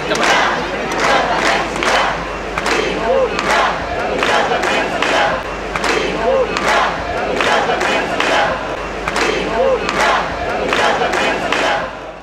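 Large crowd chanting and shouting in unison, with a regular beat about twice a second.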